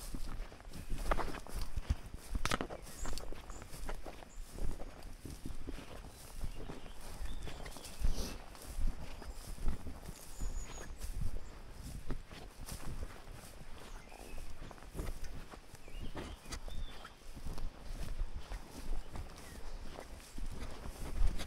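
Footsteps walking through tall grass, the grass swishing against the legs, with low bumps from the handheld camera at a steady walking pace.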